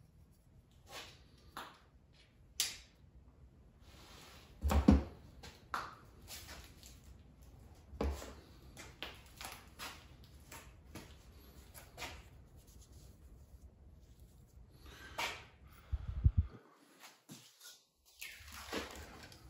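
Scattered sharp clicks, scrapes and knocks of a steel striker and a small flake of chert being handled and struck to throw sparks onto denim char cloth. The loudest knock comes about five seconds in.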